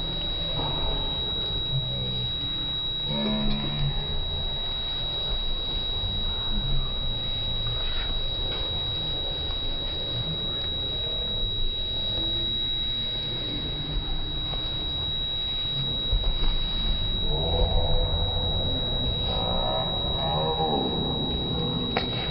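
Slowed-down audio of voices in a large hall: deep, drawn-out voice sounds with a steady high-pitched whine over them. Louder drawn-out calls with falling pitch come in about three-quarters of the way through.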